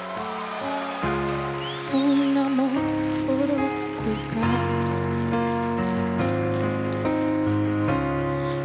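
A woman singing a slow ballad with a wavering, held voice, accompanied by a grand piano playing sustained chords.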